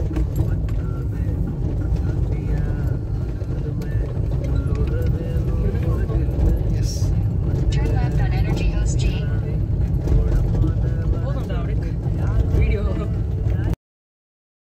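Steady low road and engine rumble inside a moving car's cabin, with people talking over it; it cuts off suddenly near the end.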